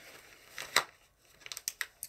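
Packaging being handled: light rustling with one sharp click just under a second in and a quick cluster of clicks about a second and a half in.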